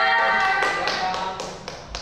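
Several voices holding a drawn-out cheer that fades about a second in, with hand claps coming through it and a few sharp separate claps near the end.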